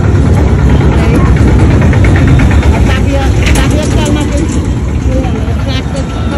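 Street traffic noise: vehicle engines running close by as a loud, steady low rumble, with people talking over it.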